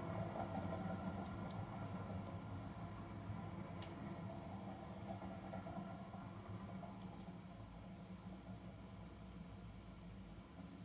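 Quiet room tone with a faint low hum and a few soft clicks.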